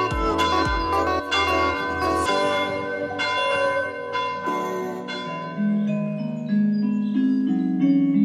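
Background music with ringing, bell-like pitched notes over a steady low beat; the beat drops out a little over two seconds in, and a stepping bass line comes in around the middle.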